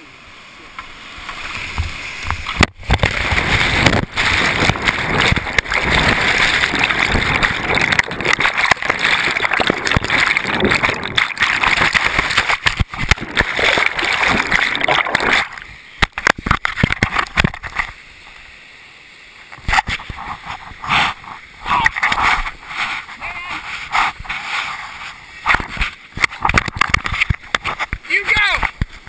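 Whitewater rapids rushing loudly past a kayaker's helmet-mounted camera. About fifteen seconds in, the sound suddenly drops and turns muffled for a few seconds, then comes back as irregular splashing and knocks, as the kayak crashes into a strainer, a fallen tree in the current.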